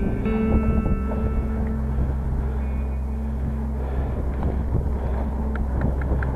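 Wind rumbling steadily on a chest-mounted action camera's microphone as a bicycle rolls along a lane. A few held musical notes sound over the first couple of seconds and again briefly around three seconds in. A few light ticks come near the end.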